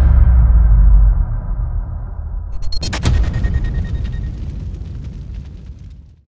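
Cinematic logo-intro sound design: a deep bass boom that holds for about a second and then fades, then a sharp hit about three seconds in that rings and dies away by the end.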